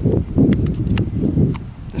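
A handful of sharp clicks from a Ruger American .308 bolt-action rifle's magazine and action as cartridges are loaded, over a low rumble of wind on the microphone.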